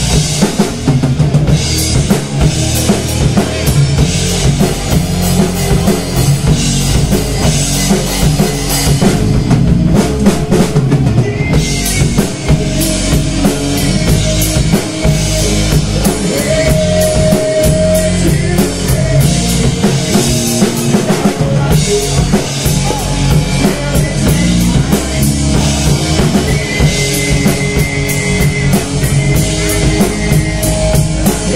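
Live rock band playing together: drum kit, electric guitar and bass guitar, loud and steady throughout.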